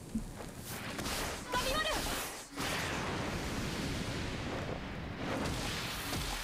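Anime episode soundtrack at moderate level: a brief spoken line about a second and a half in, then from about two and a half seconds a steady rushing, whooshing noise effect.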